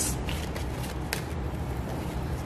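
Rider-Waite tarot cards being shuffled by hand: a soft papery rustle with a few sharp clicks of card on card.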